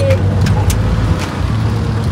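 Auto-rickshaw engine running as the three-wheeler drives along a road, heard from the passenger seat: a loud, steady low rumble with a few brief clicks.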